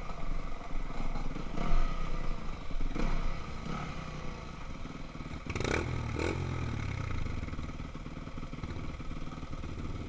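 Yamaha YZ250F four-stroke single-cylinder dirt-bike engine running at low trail speed, with light throttle blips early on and two sharper revs about halfway through. Chassis and chain clatter over the rough trail runs under it.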